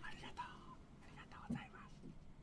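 Faint, soft speech, low and close to a whisper, with a brief click about one and a half seconds in.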